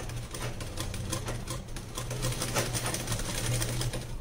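Domestic sewing machine stitching a zip into a blouse seam: it runs steadily, with a rapid, even clatter of needle strokes over a low motor hum.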